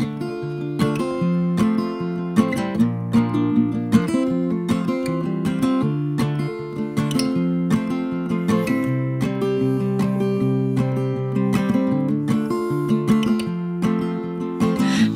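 Background music: an acoustic guitar playing plucked and strummed chords, with no singing.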